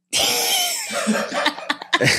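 A person's sudden harsh, cough-like vocal noise, breaking up into laughter.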